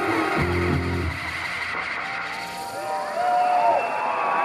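Live electronic music played through a concert PA. A low bass synth line cuts off about a second in and the song winds down. Near the end, gliding whoops and whistles from the audience rise as the song ends.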